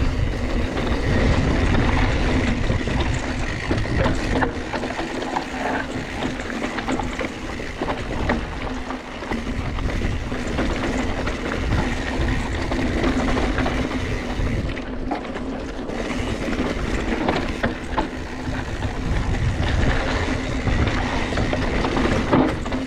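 Mountain bike descending a dirt and gravel singletrack: tyres crunching over the loose surface and the bike rattling and knocking over bumps, with constant wind rushing over the camera microphone.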